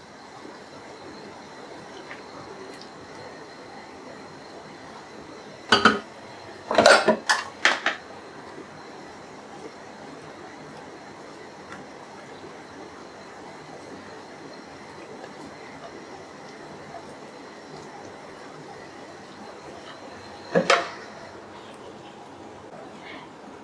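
Kitchen utensils clinking and knocking against a cooking pan: one knock about six seconds in, a quick run of several about a second later, and one more near the end, over a low steady hiss.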